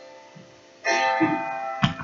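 A string instrument strummed: a chord fades out, then a little under a second in a new chord is struck and rings, with another sharp strum just before the end.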